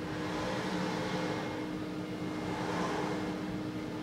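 Robot arm's joint motors and gearboxes whirring as the arm swings a knife through the air, swelling a little mid-move, over a steady low hum.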